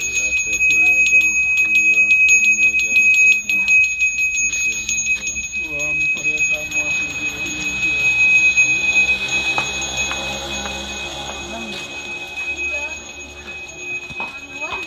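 Small brass ceremonial handbell (genta) rung continuously with rapid strokes, a steady high ring that carries through. It is the bell rung during Balinese temple prayers, with voices underneath.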